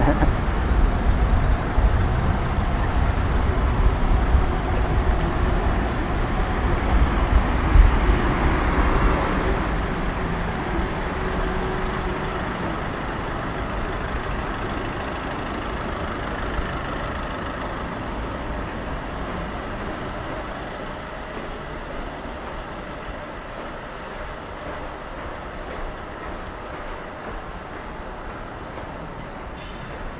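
Street traffic passing close by: car and van engines and tyres on the road, loudest in the first ten seconds with a vehicle passing nearest about eight seconds in, then fading to a quieter, more distant traffic hum.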